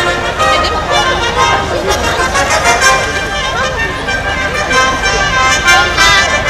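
A large orchestra with brass prominent, playing sustained chords together, with people talking close by over the music.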